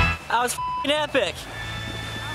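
Background music cuts off, then men's voices whoop and shout excitedly for about a second, with a short single-tone bleep over one word. After that a steady low hum remains.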